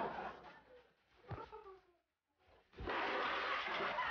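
A thump, then a short cat cry falling in pitch about a second and a half in. After a brief gap, a steady noisy hiss sets in with another thump.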